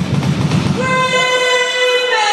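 DJ mix being cut up live with a Dicer cue-point controller: the track jumps abruptly at the start, drum hits run for under a second, then a long held horn-like note sounds over the mix as the deep bass drops out near the end.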